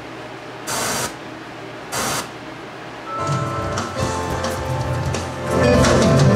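Technics ST-S707 tuner playing through speakers while it is tuned: two short bursts of static, then a station's music comes in about three seconds in and grows louder near the end. The music coming through shows the tuner's receiver still works despite its dim display.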